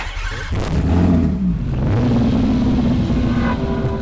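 Racing car engine on track: the note rises and falls, then holds steady under throttle, with a brief sharp click at the very start.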